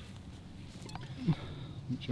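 Quiet outdoor background with two faint, brief sounds from a person's voice, one past halfway and one near the end, and a faint tick a little before halfway.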